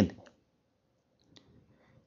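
A man's word trails off, then a pause with a single faint click about two-thirds of the way through.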